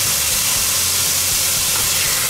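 Chicken pieces sizzling steadily in hot oil in a cast-iron Dutch oven, over the constant low hum of a kitchen extractor hood fan.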